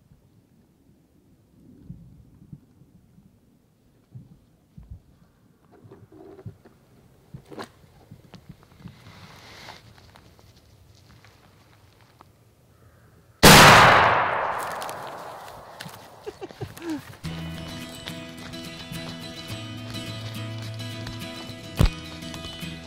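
A single shotgun shot a little past halfway through, the loudest sound by far, its report echoing away through the woods over a few seconds; before it only faint small rustles. Music comes in after the shot.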